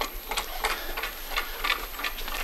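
Wave-making device of a tabletop water-tank demonstration running, a steady rhythmic clicking about three times a second.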